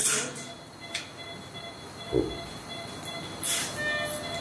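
Operating-room equipment noise: short bursts of hiss near the start and near the end over faint steady high tones, with a single dull thump about two seconds in.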